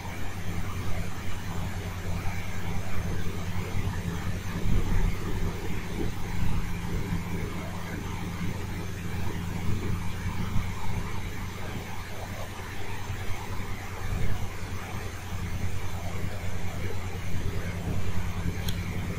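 Steady low droning hum with an even hiss of background noise.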